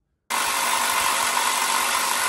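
Harbor Freight electric impact wrench hammering on a long, stubborn bolt in a Johnson V4 two-stroke outboard powerhead. It runs in one steady burst of about two seconds that starts and stops abruptly. The seized bolt only moves a little back and forth.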